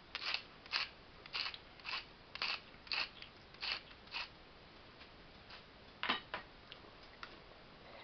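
Hand-twisted pepper grinder cracking peppercorns, about eight short crunchy grinds at roughly two a second over four seconds, then a few faint clicks near the end.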